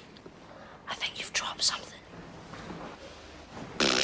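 Whispering voices, with a short louder sound near the end.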